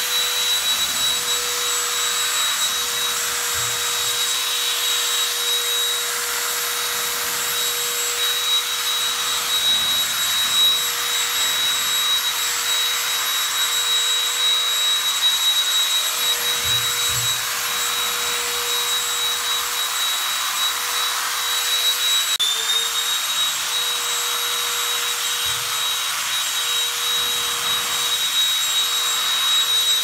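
Electric animal clippers running steadily with a high whine over a buzzing hiss while body-clipping a mammoth jack donkey's coat; the pitch dips briefly about three-quarters of the way through, then recovers.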